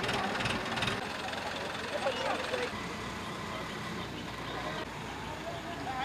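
Diesel engine of a mobile hydraulic crane running steadily, its low hum growing fuller about halfway through, with workers' voices in the background and a few knocks near the start.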